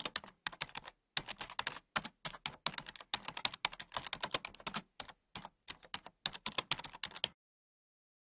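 Typing on a computer keyboard: a quick, uneven run of key clicks, several a second, which stops about seven seconds in.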